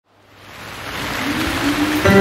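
A rushing noise fades in from silence and grows steadily louder, with a faint rising tone near the end.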